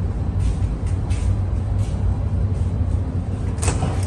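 Steady low drone of a ship's engines and machinery carried through the hull, with a few faint ticks and one sharper knock near the end.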